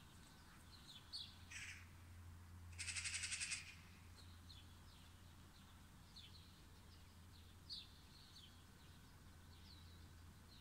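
Faint outdoor birdsong: small birds giving short, high chirps again and again. About three seconds in comes a harsh, rapid rattling call lasting under a second, the loudest sound.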